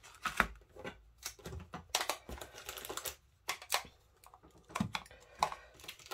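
Clear plastic stamp packets crinkling and tapping as they are handled and set down on a cutting mat: a run of irregular light clicks and short rustles, briefly quieter midway.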